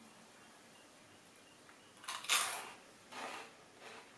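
Large dry peanut-butter cereal puffs crunched between the teeth: one loud crunch about two seconds in, then two softer crunches as they are chewed.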